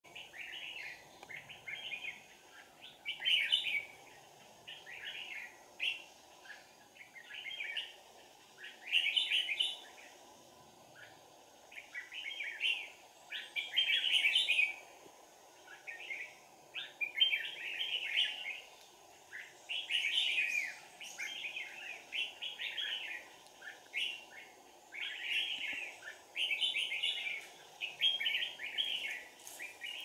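Red-whiskered bulbul singing: short, chirpy warbled phrases repeated about once a second, some louder than others.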